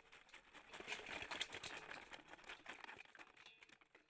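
Faint, irregular crackling and rustling as prawns are tipped from a bamboo trap into a steel bowl, thinning out near the end.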